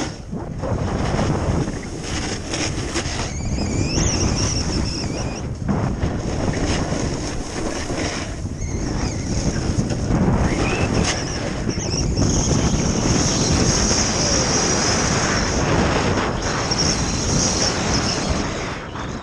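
Wind rushing over the microphone during a fast downhill run on snow, with the hiss and scrape of sliding over the snow surface. The noise rises and falls with the turns.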